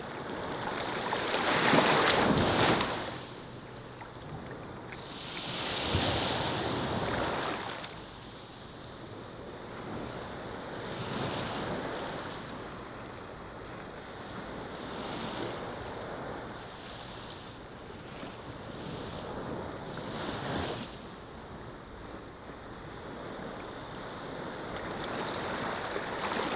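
Small sea waves washing onto a sandy beach, each surge of surf swelling and fading about every four to five seconds; the first, about two seconds in, is the loudest.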